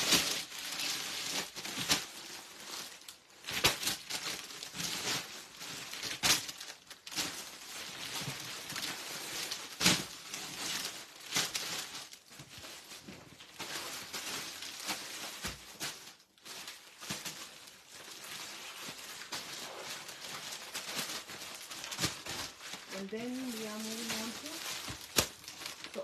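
Rustling and crinkling of sarees and their wrapping being lifted, folded and handled, with sharp crackles scattered throughout.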